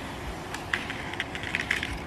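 A pen scratching on parchment paper as it is traced around a pan, with light crinkles of the paper, heard as a run of quick, irregular ticks.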